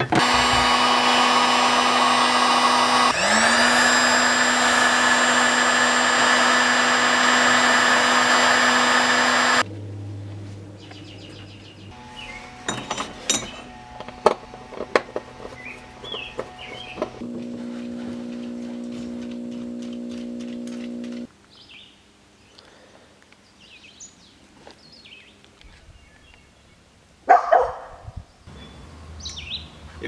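A heat gun's fan motor runs with a loud, steady hum, dips and spins back up about three seconds in, and cuts off about ten seconds in. This is the kind of tool used to shrink the heat-shrink on crimped ring terminals. Then come scattered clicks and taps of hand tools on a bus bar's terminals, with a quieter, steady motor hum for about four seconds in the middle.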